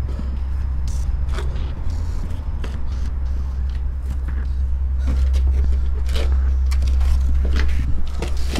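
A steady, deep drone runs under everything, with a handful of short thuds and scuffs scattered through it.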